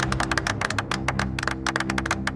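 A small group of people clapping their hands, many quick, irregular claps, with steady background music playing underneath.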